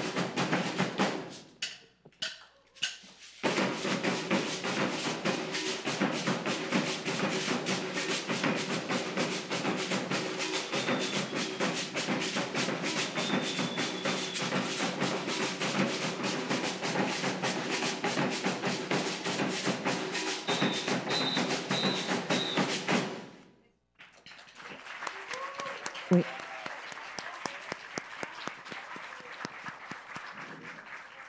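Maracatu de baque virado percussion: alfaia bass drums and agbê gourd shakers play a dense, steady rhythm that stops abruptly about two thirds of the way through. Audience applause follows.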